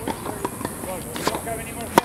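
Tennis racket striking the ball on a serve: one sharp pop at the very end, over faint voices.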